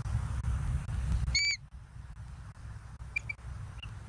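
A single clear, short bird chirp about a second and a half in, followed by two or three faint short peeps near the end, over a low rumble that drops away at the chirp.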